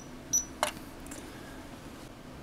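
Two short, sharp clicks with a brief high ring, about half a second apart, from a front-panel port-select push-button on an IOGear 4-port KVM switch being pressed. A single duller knock follows, from the hand on the switch's metal housing.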